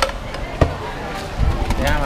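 Wooden pestle knocking in a clay mortar while pounding papaya salad: a strike at the start and a louder one about half a second in, with a voice near the end.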